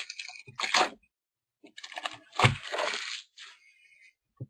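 A trading card pack's wrapper being torn open and crinkled by hand, in a few short bursts of rustling with a thump about two and a half seconds in.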